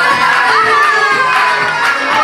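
Loud dance music with a sliding melodic lead line, over a crowd shouting and cheering.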